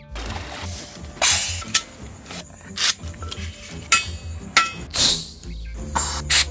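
Background music with clinks and knocks of scuba gear being handled, and a few short bursts of hiss, about one, three and five seconds in.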